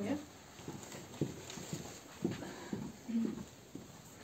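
Faint, brief murmured voices with scattered small knocks and shuffling as people move about a small office room.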